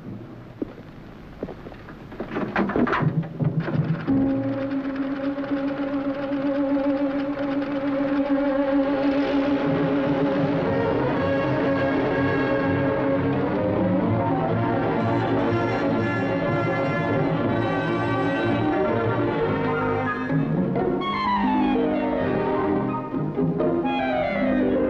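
Orchestral film score with brass. After a few sharp accents, a long held note enters about four seconds in and swells into a fuller orchestral passage, with falling figures near the end.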